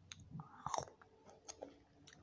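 A person chewing breakfast close to the microphone, a string of short crunches and clicks, the loudest a little under a second in.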